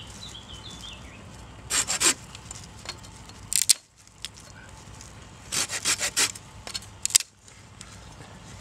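Silky Pocketboy folding saw cutting thin sticks of firewood: four short runs of quick rasping strokes with pauses between, the longest about two-thirds of the way through.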